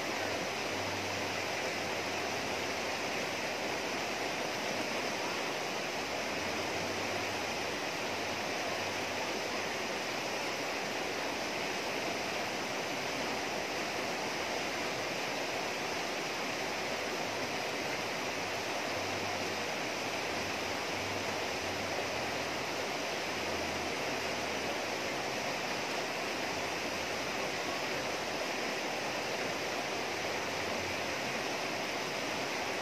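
Shallow river rushing steadily over rocks and small rapids.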